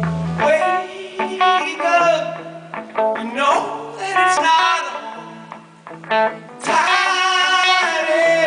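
A live indie rock band playing loudly: electric guitars and drums, with a voice singing.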